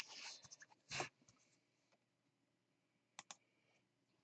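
Near silence with a few faint handling sounds from clear plastic trading-card holders on a desk: a brief soft scuff about a second in, then two quick light clicks near the end.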